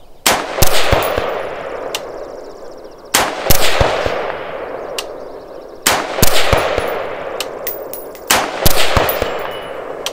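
Bear Creek Arsenal AR-15 rifle firing four single shots, about two and a half to three seconds apart, each followed by a long rolling echo across the range.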